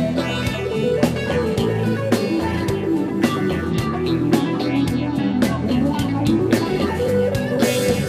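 Live rock band playing, with electric guitar, bass and drum kit.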